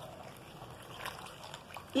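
Plastic spatula stirring a thickening mix of grated soap and hot water in a metal pot, faint wet liquid sounds.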